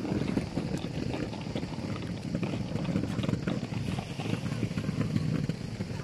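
Outdoor ambience of people in an open square: indistinct voices and general bustle, with a steady low rumble of wind on the microphone.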